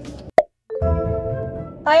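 Low car-cabin rumble cut off by a single sharp pop sound effect, then a moment of silence, after which music with held notes begins. Near the end a woman's voice starts singing.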